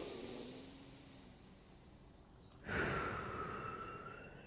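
A man breathing deeply and audibly while holding a forward-fold stretch: a breath that fades away over the first second and a half, then a louder, longer breath starting a little under three seconds in.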